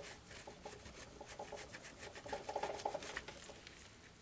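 Baby wipe scrubbing ink off a clear stamp: quick, faint, scratchy rubbing strokes that get busier about two and a half seconds in.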